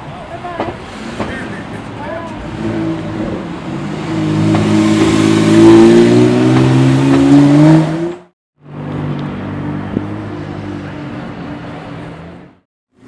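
Porsche 911's flat-six accelerating away, its note climbing gently and growing loud from about four seconds in, then cut off abruptly just after eight seconds. After a brief gap, a second sports car's engine runs at a steady, quieter note.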